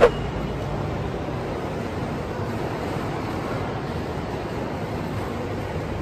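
Steady background noise of a large train station concourse, an even rumble and hiss, with a brief click right at the start.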